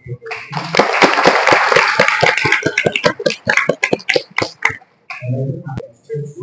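A small group applauding by hand, thick clapping that thins to a few scattered claps and stops about five seconds in; low voices follow.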